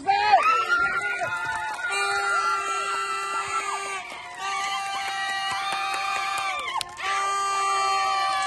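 Voices shouting and cheering to celebrate a goal, then long drawn-out held cries that break off and start again twice.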